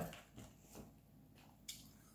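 Near silence broken by a few faint clicks from cooked crab and shrimp shell being handled, about half a second in, again soon after, and once more near the end.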